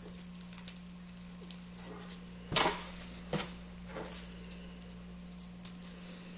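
Scissors snipping and trimming the taped edge of a plastic trash bag: a few scattered snips and plastic rustles, the loudest about two and a half seconds in, over a steady low hum.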